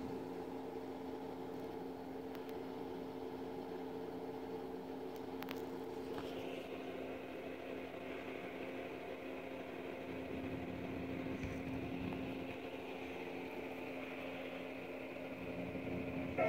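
A steady mechanical hum. A higher steady whine joins about six seconds in.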